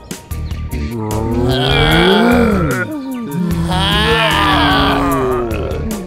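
Two long, drawn-out cartoon character voice groans over background music: the first rises and falls in pitch, the second is held and then falls away.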